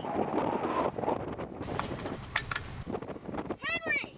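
A high-pitched wavering cry that rises and falls, heard near the end, after a few sharp clicks or knocks, with windy noise in the first second.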